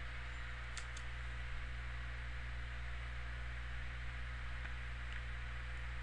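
Steady low electrical hum and hiss of a computer and microphone background, with one faint keyboard key click about a second in.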